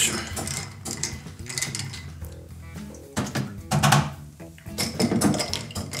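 Long metal bar spoon stirring ice cubes in tall highball glasses of cocktail, clinking and scraping against the ice and glass, over background music.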